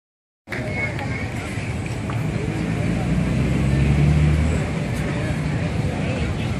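Audience chatter from a crowd, with a steady low rumble that swells around four seconds in.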